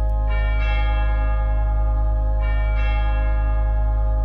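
Church bells ringing, struck twice in quick pairs about two seconds apart, each strike left to ring on over a steady deep drone.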